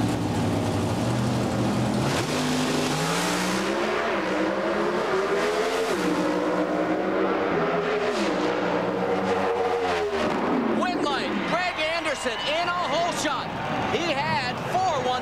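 Two Pro Stock drag cars' V8 engines held at high revs on the starting line, then launching together about two seconds in. They pull hard through the gears, the pitch climbing and dropping back at each of several shifts, and fall away near the end of the run. Voices shout excitedly near the end.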